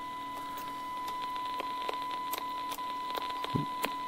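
Steady 1 kHz test tone from an AOR AR8000 wide range receiver's speaker, demodulated in wide FM from a pulse-position-modulated subcarrier, over a faint static hiss with scattered irregular clicks.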